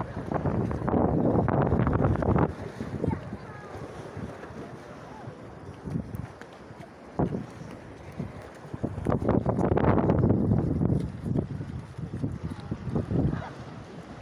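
Wind buffeting the microphone in gusts, strongest about a second in and again around ten seconds, with quieter stretches between.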